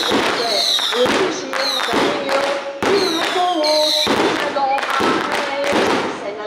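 Fireworks going off in a steady series of sharp bangs, about one or two a second, each with a short ringing tail.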